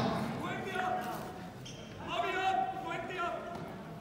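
Faint voices in a large indoor arena, echoing in the hall, in two short stretches.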